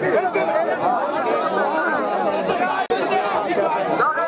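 A large crowd of men talking over one another, many voices at once with no single speaker standing out. The sound drops out for an instant about three seconds in.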